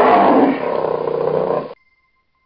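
A dinosaur roar sound effect: one long, loud roar, loudest in the first half-second, that cuts off abruptly near the end.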